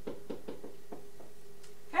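Whiteboard marker tapping and stroking on the board as a formula is written, a string of short, sharp taps several a second.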